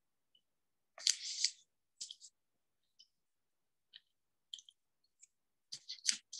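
Handling noises close to a microphone: a string of short crinkles and clicks, the loudest about a second in, with dead silence between them as heard over a video call.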